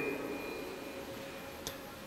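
Pause in a man's reading: his voice's reverberation dies away in a large church, leaving quiet room tone with faint steady high tones and a small click near the end.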